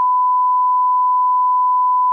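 Steady single-pitch electronic bleep at about 1 kHz, loud and unwavering, a censor bleep laid over the audio.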